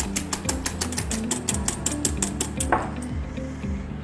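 An egg white being beaten by hand in a bowl: a quick, even run of clicks from the utensil striking the bowl, about six a second, stopping about three seconds in. Background music plays throughout.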